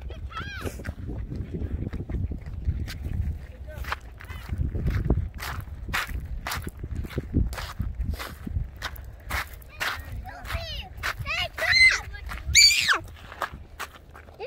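Footsteps in slide sandals on a loose gravel trail, a short crunch or slap about every half second, over a low rumble. Near the end come a few short, high-pitched vocal sounds from a person, the loudest moment.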